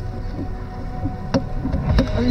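Car driving over a rough, wet unpaved road, heard from inside the cabin: a steady low rumble of engine and tyres, with a single knock just past halfway.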